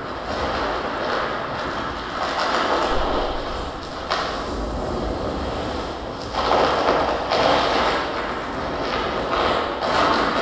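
Amplified harsh noise from contact-miked objects: a dense, rough wall of noise over a steady low rumble that swells and ebbs, loudest a little past the middle.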